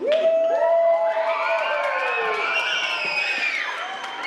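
A group of children cheering and screaming with excitement. The sound breaks out suddenly, with many high voices held and gliding over one another at once, and it eases slightly near the end.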